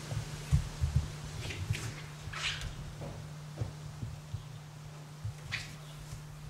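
Handling noise from a handheld camcorder being swung about: irregular low thumps and a few brief rustles over a steady low hum.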